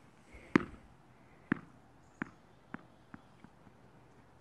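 Something bouncing on concrete: six sharp knocks coming faster and fainter, the first the loudest, as it settles.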